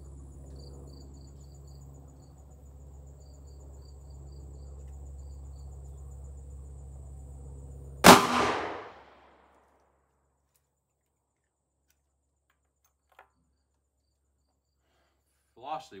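A single sharp gunshot from a Rossi RP63 .357 Magnum revolver with a 3-inch barrel, firing a Hornady 125-grain flat-point XTP load, about eight seconds in, ringing off over about a second. A steady low hum runs before the shot.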